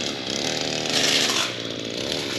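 Small gasoline engine of lawn equipment running, its pitch wavering slightly, with a brief rush of hissing noise about a second in.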